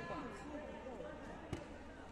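Background voices in a sports hall during a taekwondo bout, with one sharp thump about one and a half seconds in as the fighters exchange kicks.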